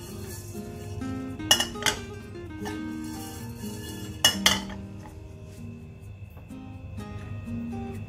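Sharp metal clinks from a pan being handled on a gas stove, in two pairs, about a second and a half in and again past four seconds, over steady background music.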